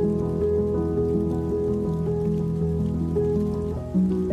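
Soft, slow music of long-held chords and notes, with steady rain falling over it as a fine patter.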